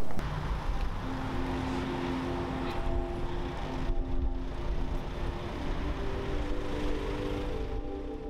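Soft background music of held chords, changing about halfway through, over a steady low outdoor rumble.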